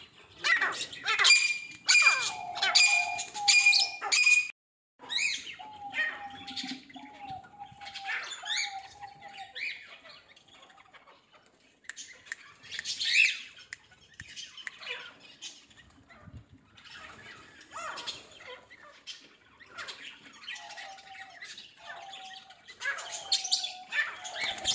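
Birds calling: repeated short chirps and squawks, loudest in the first few seconds, broken by a brief silence about four and a half seconds in, then quieter scattered calls.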